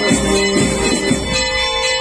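Procession band music with sustained, chord-like held notes, mixed with a bell-like ringing tone that holds through the second half.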